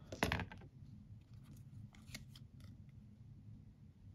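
Glossy trading cards being shuffled in the hand: a few faint, short slides and flicks of card stock against card stock. The strongest comes right at the start, with softer ones around two seconds in.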